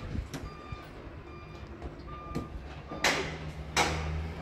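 Faint, short, high beeps of a vehicle's reversing alarm from the street and building sites below, with a low engine hum. Two short, harsh noises come near the end.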